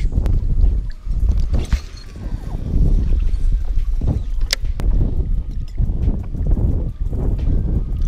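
Wind rumbling on the microphone over choppy lake water lapping against a fishing boat, with a few sharp clicks and knocks from the fishing rod and reel being handled.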